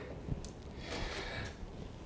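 A pause between speech: low room tone with a faint breath and a small tick, no guitar notes.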